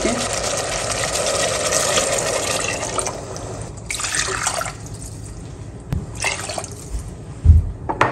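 Water poured from a glass cup into a hot steel pot of browned chicken masala, a steady rush for about three seconds, then shorter pours, with a low knock near the end.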